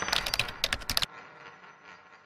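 Sound effect for an animated on-screen graphic: a quick run of sharp clicks for about a second, then a fading tail.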